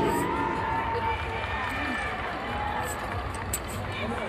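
Arena ambience: indistinct voices and crowd chatter echoing through a large hall, with no clear words.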